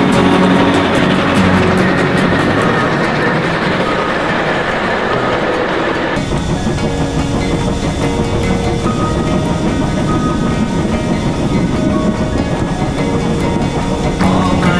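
Triple-headed steam train working hard, its locomotives' exhaust and rolling wheels mixed with music. About six seconds in the sound changes abruptly to a locomotive on the move heard from close up, with a repeating beat.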